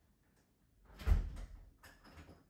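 A door shutting with a dull thump about a second in, followed by a lighter knock near the end.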